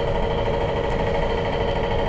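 A steady mechanical hum, a motor running at a constant pitch over a low rumble.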